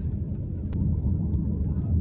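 Steady low rumble of a car heard from inside the cabin, with one faint click about three quarters of a second in.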